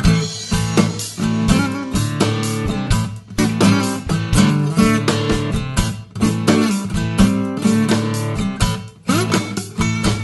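Acoustic guitar playing the instrumental intro of a blues song, a busy run of picked and strummed notes.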